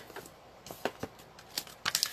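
A few light clicks and taps from a clear plastic stamp case being handled and set aside on the work surface.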